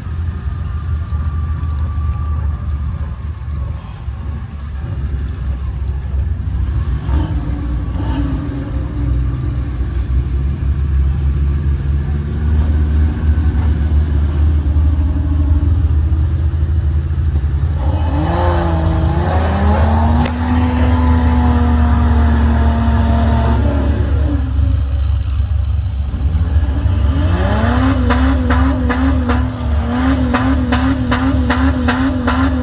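Lifted mud-bog pickup on oversized tyres driving through a water-filled mud pit, with its engine running under a steady low rumble. About two-thirds through, the engine revs up and holds a higher pitch for a few seconds, then revs up again near the end.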